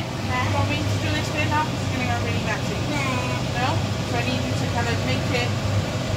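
Kitchen extractor fan running with a steady low hum, with indistinct voices over it.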